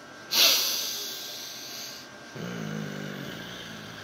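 A man's sharp, loud breath out, rushing hard onto the phone's microphone and trailing off over about two seconds. Then a low, steady hum in his throat runs to the end.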